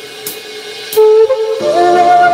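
Large bamboo end-blown flute playing over a soft electronic backing track. The flute comes in about a second in with a strong held note, then steps up to a higher held note near the end.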